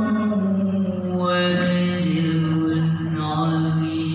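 A boy reciting the Quran in the melodic tilawah style, drawing out one long phrase on sustained, ornamented notes that step down in pitch.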